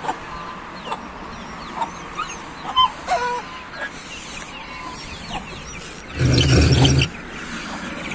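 Young chickens clucking and peeping in short, scattered calls. About six seconds in, a louder, rough noise lasts under a second.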